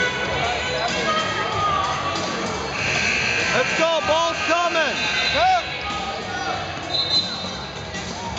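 Basketball game on a hardwood gym floor: several short, high sneaker squeaks come in quick succession about halfway through, over the dribbling ball and a steady murmur of voices in the gym.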